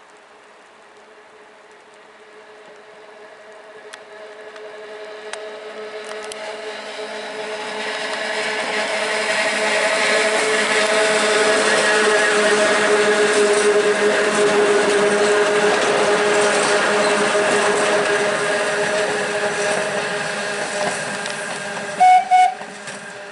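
Two-car Train jaune, a metre-gauge electric train, running past on its mountain track: the rumble of wheels on rails and a steady motor whine grow louder from a few seconds in, hold loudest through the middle, and ease off a little near the end.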